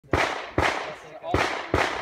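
Four gunshots at uneven intervals, each followed by a short echoing tail.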